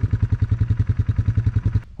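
ATV engine idling close by, a steady low pulse of about twelve beats a second; it cuts off abruptly near the end.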